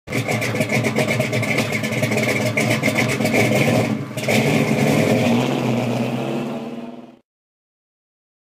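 A loud, raspy car engine running hard under throttle, with a brief drop about four seconds in. It fades and cuts off after about seven seconds.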